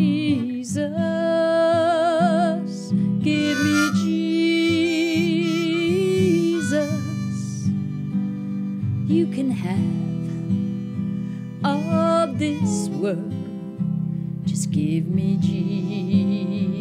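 Harmonica playing a melody with a wavering tone over acoustic guitar accompaniment: an instrumental break in a song.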